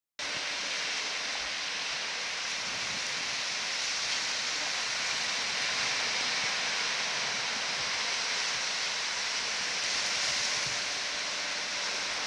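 Steady hiss and wash of small surf breaking and running up a sandy beach, swelling slightly now and then.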